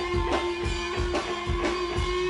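Live rock band playing: electric guitar holding a sustained note over a Premier drum kit beating steadily, about four hits a second.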